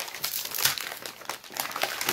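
Protective wrapping around newly delivered books being crinkled and pulled off by hand: irregular crackling rustles, loudest just over half a second in.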